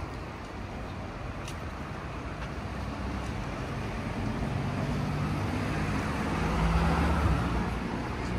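City street traffic with a car driving past, growing louder from about halfway through and loudest near the end.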